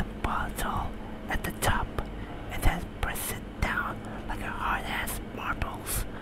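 A man whispering close to the microphone, with a few sharp clicks mixed in.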